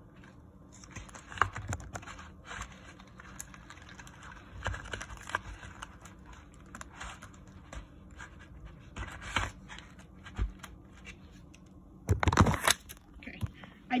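Irregular scratching, rubbing and light clicking of a phone being handled close to its microphone, with a louder rustling burst near the end.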